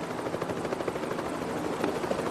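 Helicopter overhead, its rotor chopping steadily.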